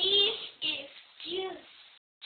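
A young girl singing three short sliding notes, one after another.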